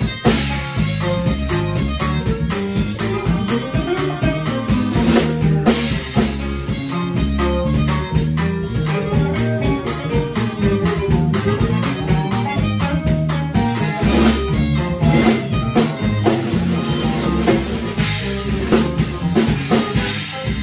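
A live conjunto band playing an instrumental passage with no singing: accordion and saxophone over drum kit, bass and strummed guitar, with a steady dance beat.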